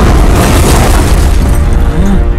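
A loud, deep boom hits at the very start, with a noisy rumbling tail that fades over about a second and a half, over music with a heavy bass.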